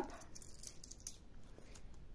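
Euro coins clicking together as they are picked through in the hand: a few faint metallic clicks, one a little louder about a second in.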